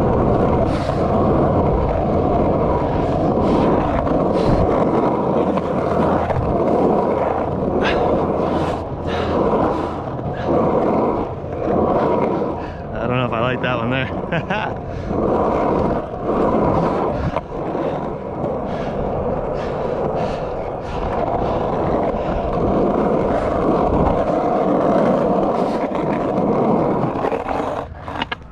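Skateboard wheels rolling continuously over an asphalt pump track: a rough rolling rumble with a steady whine through it, swelling and easing in waves as the board pumps over the humps and through the banked turns, with scattered clicks and knocks from the board.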